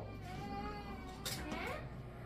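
A high-pitched voice holding long, drawn-out wavering tones, with a short glide near the end, and a brief click a little past halfway.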